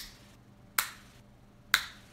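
Sharp taps of one small hand-held object striking another, about one a second, three in all, each a hard click with a brief ring-off, knocking repeatedly at the same spot.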